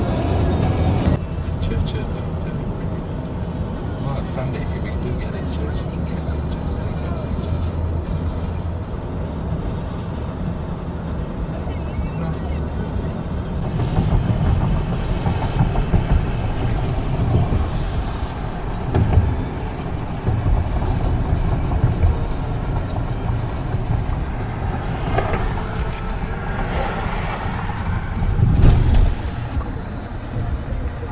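Steady low road and engine rumble inside a moving car's cabin, with music cutting out about a second in and the noise swelling briefly near the end.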